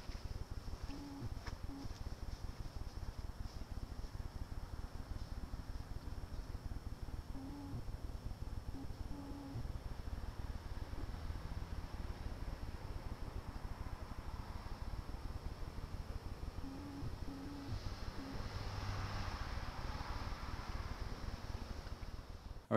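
Faint outdoor background noise picked up by a night-vision camera's built-in microphone: a low rumble with a steady high-pitched whine, and no speech.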